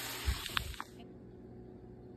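Steady hiss of food cooking on the stovetop, with a soft knock a little way in; the hiss stops about a second in, leaving a low background.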